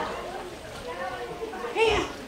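Quiet murmuring and laughter from a sermon audience reacting to a joke, with several voices overlapping and one short voice near the end.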